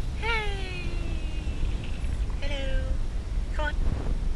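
Tabby cat meowing three times: a long drawn-out meow that falls in pitch, a shorter one about two and a half seconds in, and a brief one near the end.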